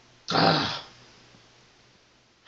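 A man clearing his throat once, a short burst of about half a second.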